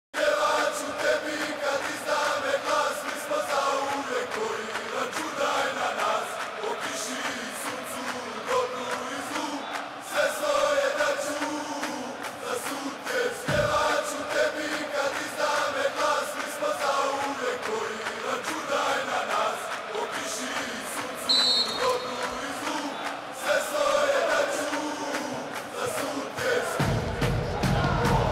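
A group of voices chanting in unison without pause, with a short, high, steady whistle about two-thirds of the way in and a single dull thump just past halfway.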